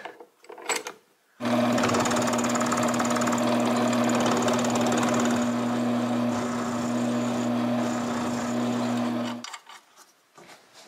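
Homemade wooden milling machine running with an end mill cutting into the rim of a small metal pulley held in a vise. A steady motor hum with a hiss of cutting starts about a second and a half in and stops suddenly near the end.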